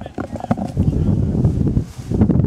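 Racehorses galloping on turf, a dense low run of hoofbeats, with people talking indistinctly over it.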